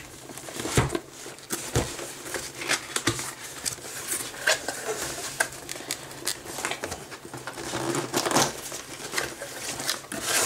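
Cardboard packaging being opened and handled: flaps rustling and scraping and inner cardboard boxes shifting, with scattered irregular taps and clicks.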